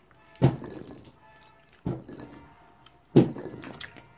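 A child hitting a table: three dull thuds about a second and a half apart, the third the loudest, over faint background music.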